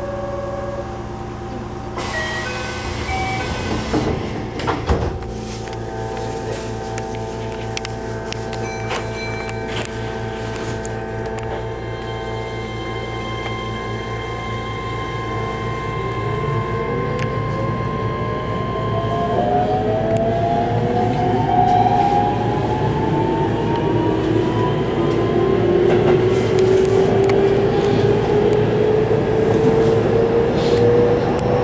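Electric train pulling away and accelerating: after a few short electronic tones and some clicks and knocks in the first five seconds, the traction motors set up a whine in two pitches that rises steadily from about halfway, over growing rail rumble.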